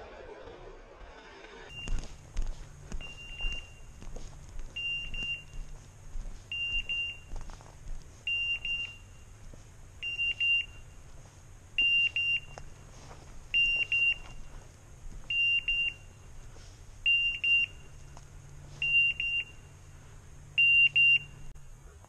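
Electronic beeper collar on a hunting pointer giving a high-pitched beep about every two seconds, each beep a quick cluster of pips, eleven or twelve times in a row. Under it are the hunter's footsteps and rustling through scrub.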